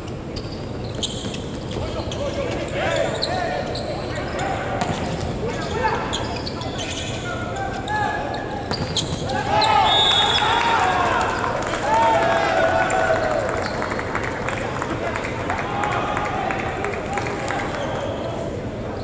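Indoor volleyball rally: sharp smacks of the ball being served, passed and hit, with players calling and shouting on court, louder in the second half.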